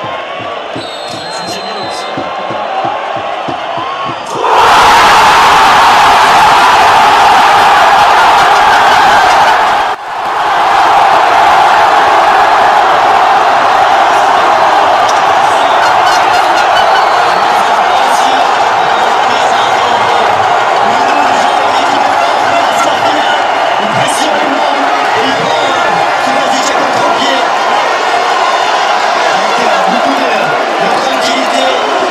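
Crowd of spectators at a football match: a few voices at first, then about four seconds in a dense, loud din of many people shouting at once. It breaks off for an instant near ten seconds and comes straight back just as loud.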